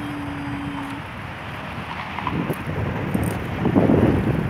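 Wind buffeting a phone's microphone, with road traffic noise underneath; a single steady tone holds for about the first second, and the wind gusts loudest near the end.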